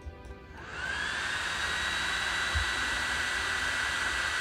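Cooling fan of an Ortur 10 W diode laser module spinning up as the module is switched on, its whine rising about half a second in and then running at a steady high pitch with a rush of air.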